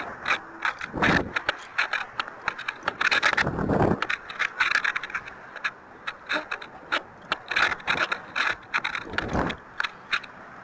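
Wind rushing over the microphone of a small onboard camera on a descending model rocket, with heavier gusts about one second in, in the middle and near the end. Rapid clicks and rattles from the rocket's airframe run throughout.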